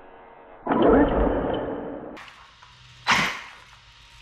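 An electric RC monster truck's motor and drivetrain spin up briefly as the throttle is pulled, then wind down over about a second and a half. A short sharp sound follows about three seconds in.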